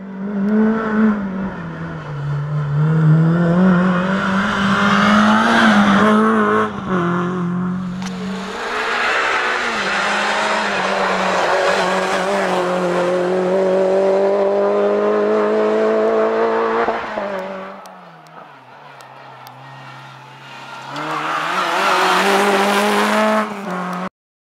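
Renault Clio RS rally car's four-cylinder engine revving hard on a stage, its pitch climbing in long pulls and dropping at each gear change. Near the end it fades to a quieter stretch, then comes back loud.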